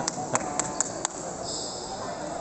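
Table tennis balls clicking sharply off bats and tables, about five quick clicks in the first second, over the chatter of a busy hall.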